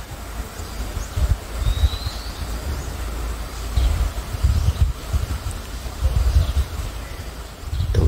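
Wind buffeting the microphone in uneven gusts, with a faint bird call rising briefly about two seconds in.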